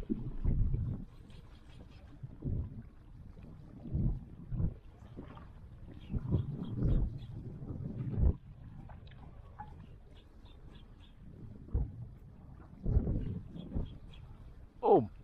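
Wind buffeting the microphone in irregular low rumbling gusts, about eight of them, over a steady background hiss.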